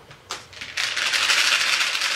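Skittles rattling in a small clear plastic container as it is shaken. A light knock as it is picked up comes first, then a dense, fast rattle from about half a second in.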